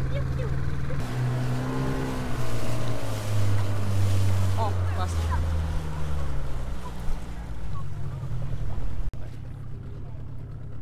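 Dinghy outboard motor running under way, its pitch stepping up and down with the throttle and falling off as the boat slows alongside. Wind buffets the microphone, and the sound drops away suddenly about a second before the end.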